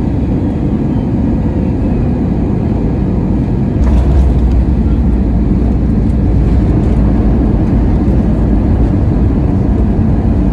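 Cabin noise of an Airbus A321neo through its landing: a steady rush just above the runway, then the main wheels touch down with a brief thump about four seconds in. After that a louder low rumble of the tyres rolling on the runway carries on.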